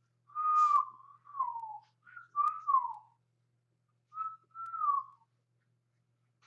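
A person whistling a short tune: about six notes in three phrases, most of them sliding down in pitch at the end.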